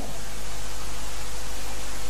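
Steady hiss of recording noise, with a low hum and a faint steady tone beneath it.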